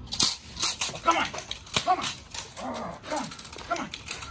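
A dog barking in a quick run of short barks that fall in pitch, mixed with sharp cracks.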